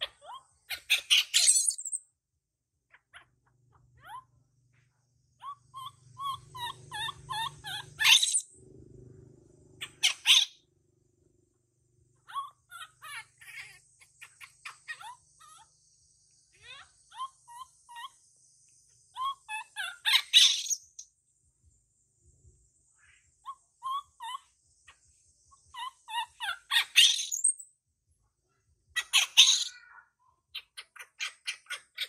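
Baby macaque crying: short, shrill screams every few seconds, the loudest sounds here, with softer chirping calls between them.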